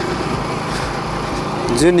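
Bajaj Pulsar NS200's single-cylinder engine running steadily while the bike cruises at about 30 km/h.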